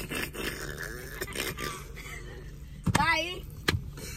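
A man laughing hard in bursts, with a sharp rising-and-falling vocal outburst about three seconds in and a few short knocks. Under it runs a steady low hum inside a car.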